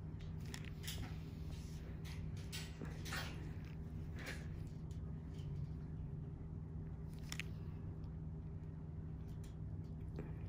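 Steady low room hum with a scattering of faint, irregular short clicks and rustles, about eight over the stretch.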